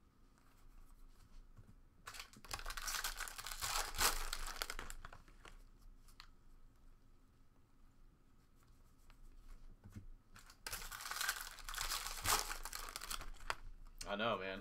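Foil wrappers of Bowman Jumbo baseball card packs tearing and crinkling as they are opened by hand, in two spells of about three seconds each: one about two seconds in, one near the end. Between them there is only faint handling of cards.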